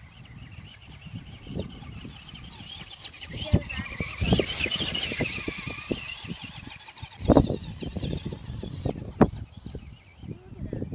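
A Traxxas radio-controlled monster truck's motor and drivetrain whine, rising as the truck runs up close over the rough ground around the middle and fading as it pulls away. Several low thumps are scattered through it.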